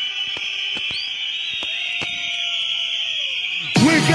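Breakdown in a mid-90s happy hardcore DJ mix: a steady high-pitched synth tone holds with no beat, under it a faint lower tone that slides down and fades. Just before the end the beat and bass drop back in.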